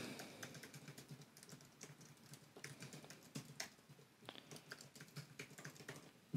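Faint typing on a computer keyboard: a run of light, irregular keystrokes.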